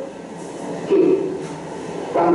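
A short pause in a man's speech, filled by a steady background noise, with one brief spoken sound about a second in.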